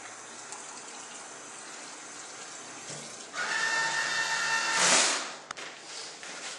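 Water running steadily from a restroom tap. About three seconds in, a louder rush with a steady whine starts suddenly, swells, and cuts off about five seconds in.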